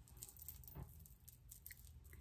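Near silence: faint soft rustles and light ticks of hands and a comb working a wig on the head.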